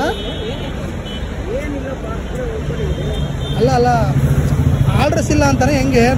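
Roadside traffic under men's talk. From about halfway in, a bus engine's low steady hum grows louder as the bus comes close.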